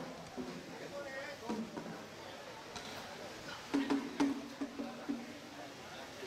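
A small red barrel drum struck with a wooden stick, a quick run of about six strikes about four seconds in, sounding the order to begin play of the hand.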